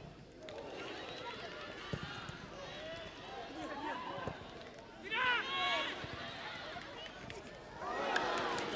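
Pitch-side sound of a football match: players shouting and calling to each other over scattered spectator voices, with a few thuds of the ball being kicked. A louder burst of high shouts comes about five seconds in as the ball is played across the goalmouth.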